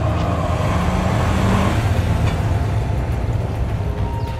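A car's engine and road noise, running steadily with a heavy low rumble that swells slightly in the first couple of seconds.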